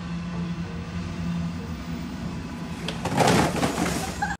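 A steady engine-like hum under street noise, fitting the delivery van idling. About three seconds in there is a louder, brief burst of noise as a tall stack of cardboard parcels tumbles to the pavement.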